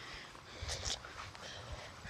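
Faint footsteps on grass while walking, a few soft thumps about half a second to a second in and again near the end.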